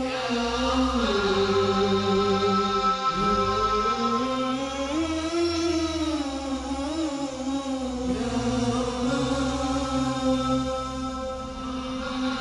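Chanted vocal music: a voice sings long held notes that slide slowly up and down in pitch over a steady low drone.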